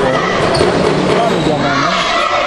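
A basketball being dribbled, bouncing on the gym floor, among the voices of players and spectators in a large hall.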